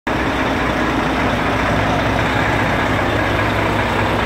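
Volvo New FH 540 truck's 13-litre inline-six diesel engine idling steadily.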